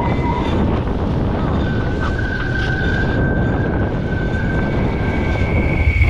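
Wind buffeting the microphone and water rushing past a foiling ETF26 catamaran at speed, a dense steady roar, with a thin, steady high whine from about two seconds in. It cuts off suddenly at the end.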